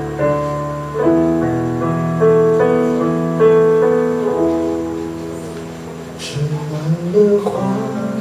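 Yamaha CP stage piano playing a slow, gentle chord intro: each chord is struck and left to ring and fade before the next. Near the end a few quicker notes lead on.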